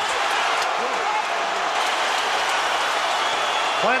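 Boxing arena crowd cheering and shouting in a steady din after a knockdown, with a few voices briefly standing out.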